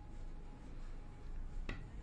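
Quiet room tone with one faint short click near the end.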